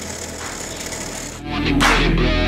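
Bench drill press running as its bit cuts into a solid copper block, a steady whirring grind. About one and a half seconds in, background rock music with guitar comes in over it, with a cymbal crash.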